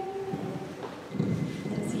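Handheld microphone handled as it is passed from one person to another, with a low rumbling handling noise about a second in.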